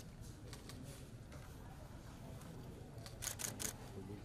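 Camera shutter clicking: a few single clicks in the first second, then a quick burst of four near the end, over a low room hum.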